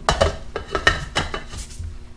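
Metal clinks and knocks as the lid is fitted onto the metal paint cup of an Ingersoll Rand 270G HVLP spray gun after it has been filled. There are half a dozen or so separate sharp clicks over two seconds.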